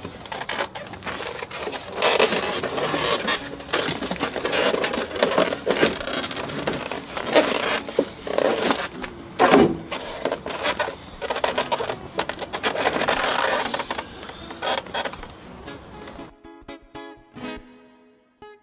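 A polystyrene jack-and-tool tray scraping, squeaking and knocking as it is pushed flat into a van's door-step compartment under a lip and tipped into place. The handling noise stops near the end and guitar music comes in.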